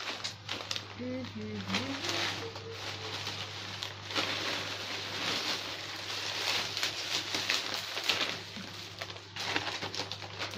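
Plastic shopping bags rustling and crinkling as clothes are handled and packed back into them, over a steady low hum.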